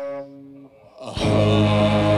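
A live rock band with electric guitar and keyboard lets a held chord die away, leaving a brief near-break, then comes crashing back in together a little over a second in and plays on at full volume.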